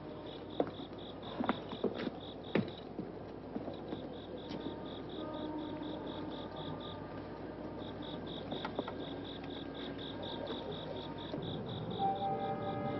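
Crickets chirping steadily in quick, even pulses, as a night-time soundtrack ambience, with a few sharp knocks in the first three seconds.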